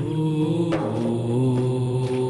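Wordless chanted vocal music: long held notes, with a low drone beneath, that shift to new pitches a few times.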